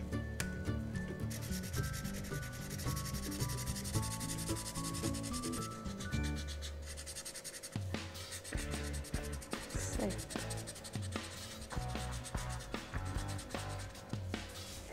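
Crayon rubbing quickly back and forth on corrugated cardboard as a patch is coloured in: a dry, scratchy scribbling sound made of many short strokes.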